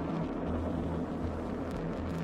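Atlas V rocket's RD-180 main engine running at liftoff: a steady, deep, even noise with no break in it.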